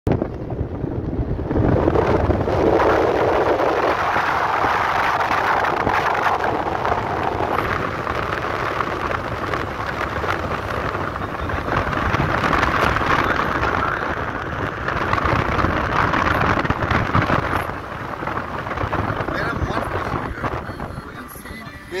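Wind and road noise from a car being driven: a steady noisy rush that rises and falls in level.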